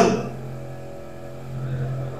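A man's voice trailing off at the end of a phrase, then a pause holding only a steady low hum.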